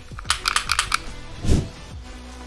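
A quick run of about eight small metallic clicks from a Taurus G3C 9mm pistol's action being worked in the hands, then a single low thump about one and a half seconds in.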